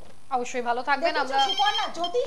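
A voice talking, with a short pulsed telephone ring tone sounding over it about a second and a half in.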